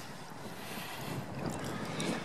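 Wind blowing across the microphone: a steady rushing noise that swells and eases in gusts.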